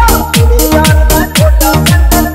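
Haryanvi DJ remix dance track at full volume: heavy 'hard punch' bass kicks, each dropping in pitch, about two a second, with sharp percussion hits between them and no vocals.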